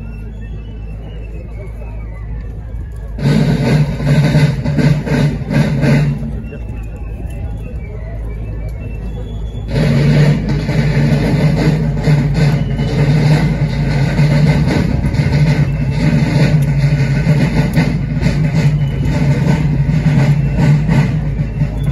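Parade drums of a folkloric military march beating in two loud stretches, starting suddenly about three seconds in and again near ten seconds, with quieter street noise between.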